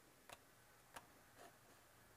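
Near silence: room tone with two faint, short clicks about a third of a second and a second in.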